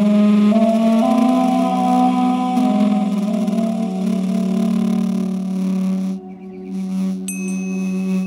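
Background duduk music of long held notes that step slowly in pitch, then a pair of tingsha cymbals struck together once near the end, giving a bright, high ring that keeps sounding.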